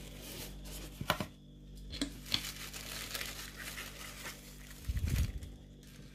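Tissue paper crinkling and rustling as a cardboard mailer box is opened and a tissue-wrapped package is lifted out, with a few sharp cardboard clicks and a low bump about five seconds in.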